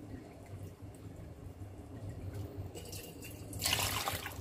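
Water poured from a plastic measuring jug splashing into a pot of corn and soup ingredients, starting near the end as a loud, even splash.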